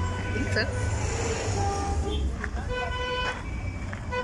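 Street traffic noise with a steady low rumble, and vehicle horns honking several times in short held blasts.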